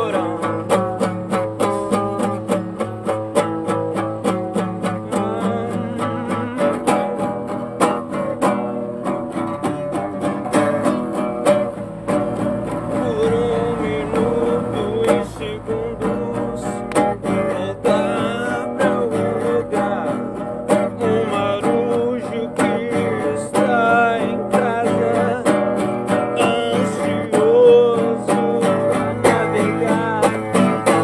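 Acoustic guitar strummed in a quick, steady rhythm, chords ringing continuously.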